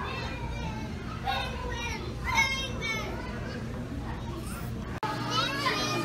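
Children's excited voices and high-pitched squeals over a steady low hum. About five seconds in the hum stops and closer children's voices grow louder.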